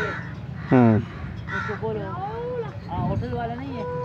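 Several people's voices talking in the background, with one short, loud call about a second in that stands out above them.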